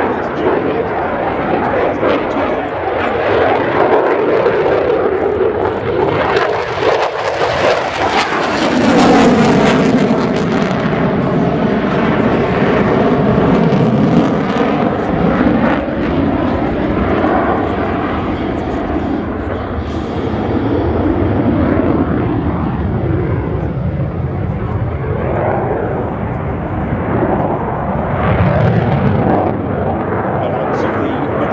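Royal Danish Air Force F-16AM Fighting Falcon's Pratt & Whitney F100 turbofan running at high power as the jet manoeuvres overhead: a loud, continuous jet roar. It swells about a third of the way in with falling and rising sweeping tones as the aircraft passes, and swells again near the end.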